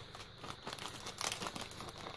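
Faint, irregular crinkling of a thin clear plastic bag being handled and turned over in the hands.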